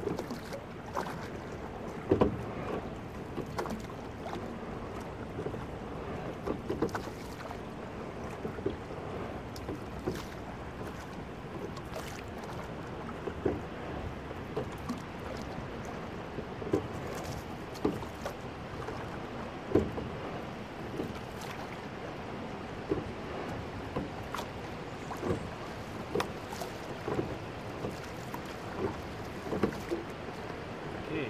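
Sculling boat under way: the oars clunk in their gates at each stroke, a sharp knock every one to three seconds, over a steady rush of water along the hull.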